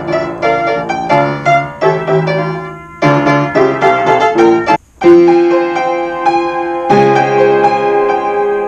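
Old upright piano being played, chords and a melody, as a play-through test after two broken keys were repaired. The playing thins out about three seconds in and stops briefly just before five seconds, then carries on.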